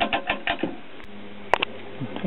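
Rotary selector switch on a vintage capacitor tester clicking through several detent positions in quick succession, then one sharp click about a second and a half in.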